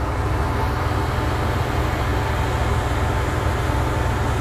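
Steady low drone of a ship's engine and machinery, running evenly without change.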